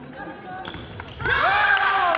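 A couple of sharp knocks of fencers' feet on the wooden floor, then, about a second in, a sudden loud, drawn-out shout from a fencer as the scoring lights go on after a touch.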